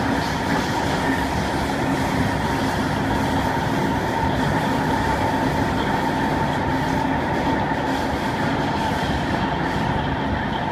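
Cabin noise inside a Kawasaki C151 MRT train running steadily through an underground tunnel: a constant rumble of wheels on rail and running gear, with a faint steady hum held under it throughout.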